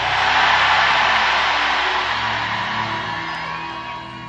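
A congregation shouting a loud "amen" and cheering: a roar of many voices that swells soon after the start and slowly fades. Soft sustained music plays underneath.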